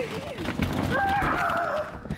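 A girl's drawn-out, whining cry that is held and then falls in pitch in the second half. She has just been woken by cold water poured over her. Rustling and shuffling of bedding runs underneath.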